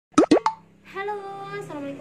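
Three quick loud plops, each a short falling blip, in the first half second, followed by a woman starting to speak.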